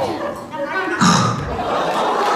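Voices over a microphone in a large hall: a falling vocal sound at the start, then a sudden loud vocal sound about a second in, with audience chatter behind.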